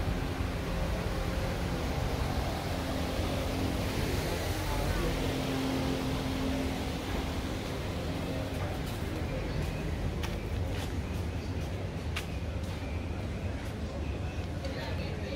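Urban street ambience: a steady hum of traffic and engines with a low rumble, and a few short sharp clicks in the second half.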